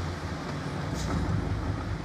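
Red Porsche 911 convertible driving with the top down: a low, steady rumble of engine and road noise.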